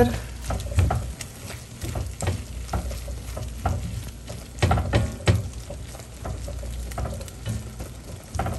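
Vegetables (mushrooms, broccoli and wilted spinach) sizzling in a hot wok while being tossed with silicone-tipped tongs. Irregular scrapes and knocks of the tongs against the pan run through it, the loudest two coming a little before and a little after five seconds in.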